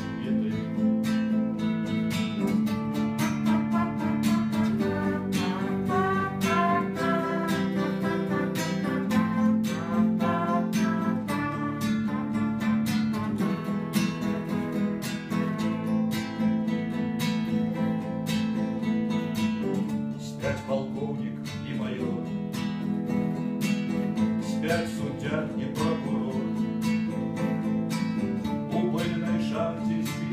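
Acoustic guitar strummed in a steady rhythm, with a man's singing voice over parts of it.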